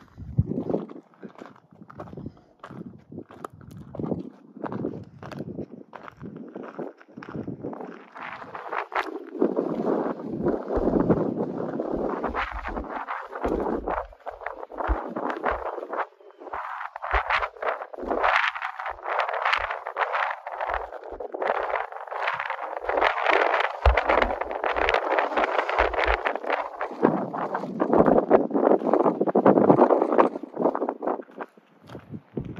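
Footsteps crunching steadily on a rocky gravel-and-dirt trail, with occasional low rumbles on the microphone.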